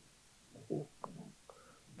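A pause in a man's speech: a quiet room with a brief faint low vocal murmur and two small mouth clicks.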